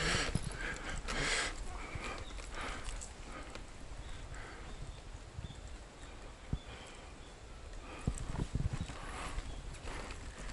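Wheelchair rolling over an uneven temple path: a low rumble with irregular knocks and rattles, a sharp knock about six and a half seconds in and a burst of clatter near the end.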